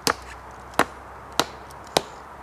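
Wooden mallet striking the top of a sharpened wooden stake, driving it into the ground: four blows, about one every 0.6 seconds.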